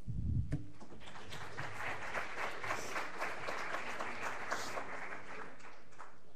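Audience applauding: a dense spread of many hands clapping that builds about a second in and dies away near the end, after a brief low thud at the very start.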